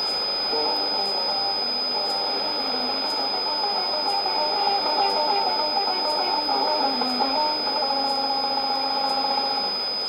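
Music from a shortwave AM broadcast playing through a Sony ICF-2001D receiver's speaker. It comes through hissy reception with a steady high whistle over it.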